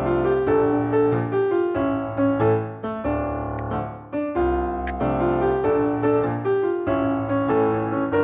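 Piano accompaniment for a ballet exercise, a steady run of notes over chords in an even pulse, heard over a video call. Two faint clicks come near the middle.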